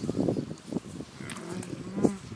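Friesian dairy cow mooing: a short, low call starting a little past a second in.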